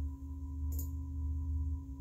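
Steady background hum with a low drone and a thin, fainter high tone above it, unchanging throughout; a faint click about three-quarters of a second in.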